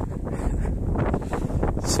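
Wind buffeting a handheld phone's microphone outdoors, a heavy, uneven low rumble.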